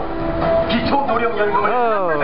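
Election campaign loudspeakers playing music and an amplified voice. There are held notes in the first half, then a long falling, voice-like swoop near the end.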